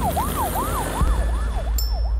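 Emergency-vehicle siren in a fast yelp, its pitch sweeping up and down about three times a second, over a deep low rumble.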